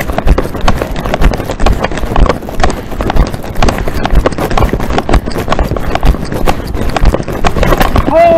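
Handling noise on a small camera's microphone: a dense, irregular run of knocks and rubbing as the covered camera is jostled and moved.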